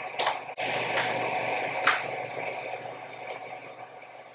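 Steady low hum and hiss with a few short clicks or taps: two close together near the start and one about two seconds in.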